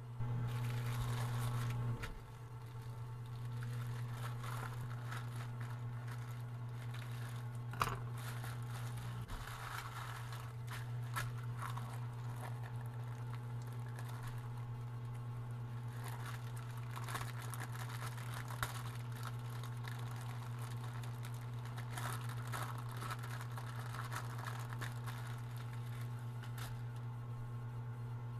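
Clear plastic wrapping and a plastic mailer bag crinkling and rustling as hands unwrap silicone resin molds, with a few sharp taps along the way. A steady low hum runs underneath throughout.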